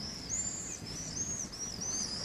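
Songbirds singing: a run of short, high chirps that rise and fall, one after another, over a low background hum.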